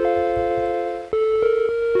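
Macintosh PowerBook 160 death chime played back as a sound sample: notes enter one after another in a rising arpeggio, then a second run of notes begins about a second in. On a real Mac this chime signals that the hardware failed and the computer could not boot.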